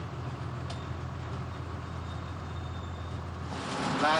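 Food truck's engine and road noise heard from inside the cab while driving, a steady low drone.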